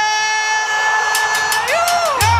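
A single voice holding one long sung note, rising in pitch near the end, as the intro to a song. A quick run of sharp percussive hits comes in about a second in.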